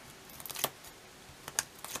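Backing liner being peeled off strips of double-sided tear-and-tape on a small paper label: a faint crackle and a few small sharp clicks as it comes away.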